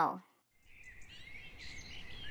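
A voice's last note slides down and ends just after the start. After a moment of silence, faint outdoor ambience with birds chirping fades in and grows slowly louder.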